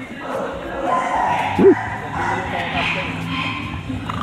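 A dog barks once, a short, loud bark about one and a half seconds in, over the chatter of people around it.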